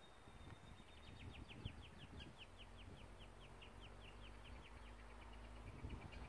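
Near silence with a faint bird call: a rapid trill of short down-slurred high notes, about eight a second, starting about a second in, over a low rumble of wind on the microphone.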